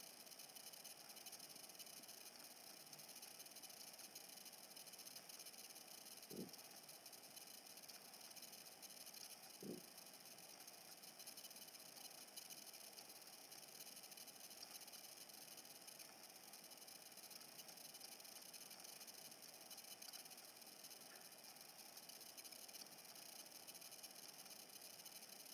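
Near silence: a faint steady hiss of room tone, with two brief soft thumps about six and ten seconds in.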